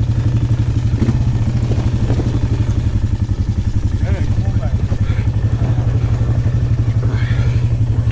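Polaris Magnum ATV's single-cylinder four-stroke engine running steadily at low revs with an even pulse while the quad backs down a dirt hillside after a failed climb.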